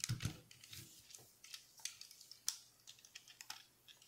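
Plastic parts of a Transformers Titans Return Voyager-class Megatron toy clicking and rattling faintly as it is transformed by hand, its wing being swung out straight: a loose scatter of small clicks, one a little louder about two and a half seconds in.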